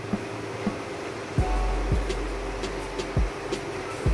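Background music with a low bass line and drum beats.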